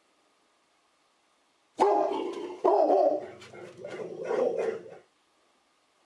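A dog barking, a run of several loud, irregular barks that starts about two seconds in and stops about three seconds later.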